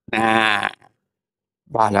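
A man's voice holding one drawn-out Thai syllable for about half a second, then a pause, then speech starting again near the end.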